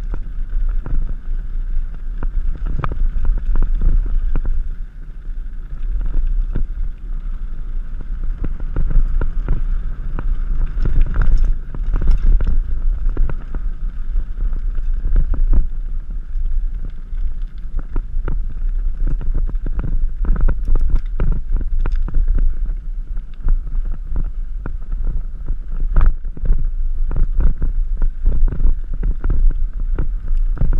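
Mountain bike riding fast down a hard-packed, very bumpy gravel trail: a constant rumble of tyres on the ground and wind on the camera microphone, with frequent sharp knocks and rattles as the bike hits bumps, even with front suspension.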